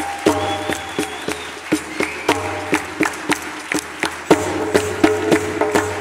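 Hand drums played together in a fast, steady rhythm: a frame drum and a goblet drum struck with the hands, the sharp strikes ringing with a clear pitch.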